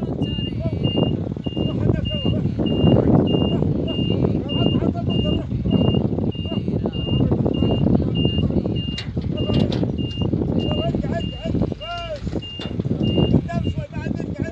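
Vehicle warning beeper sounding a steady single-pitched beep just under twice a second, stopping shortly before the end, over a low rumble.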